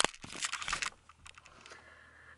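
Handling noise from a hand-held camera being moved: a quick run of small clicks and fabric rustling in the first second.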